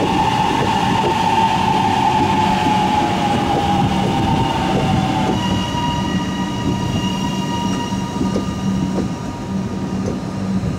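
Electric metro train passing close by: wheel-on-rail rumble and clatter under the whine of its traction motors. The whine sags slightly in pitch, then about five seconds in switches to a steadier, higher set of tones.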